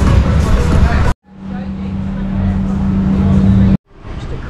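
About a second of music playing in a bar, then an abrupt cut to street noise: a steady low hum from traffic, fading in.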